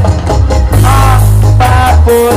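Loud live band music: a heavy held bass line with drum hits and a short melodic line above it.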